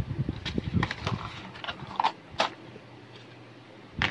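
Packaging being handled: a power bank in its sealed plastic sleeve is picked up, giving a few short crinkles and taps in the first half, then it goes quiet.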